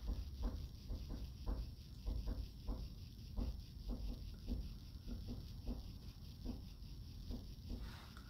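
Faint, irregular soft taps and brushing of a flat-top dual-fibre makeup brush working blush onto the cheek, about three a second, over a low steady room hum.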